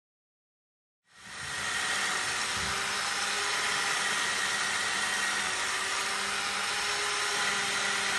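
Magnetic drill's electric motor running steadily as it bores a bolt hole in a wooden railway sleeper through a steel jig, a constant whine with fan hiss. It starts about a second in.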